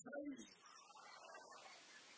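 A man's voice through a microphone trailing off in the first half-second, then near silence with a steady hiss.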